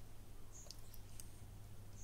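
Quiet room tone with a low steady hum and a few faint, short clicks about a second in.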